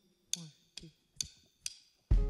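Wooden drumsticks clicked together to count in a song: four sharp clicks a little under half a second apart, with a faint spoken count under the first two.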